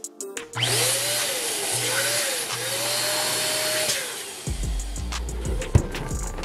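Electric balloon pump running for about three and a half seconds as it inflates a latex balloon, a steady motor hum with a wavering tone above it, then cutting off.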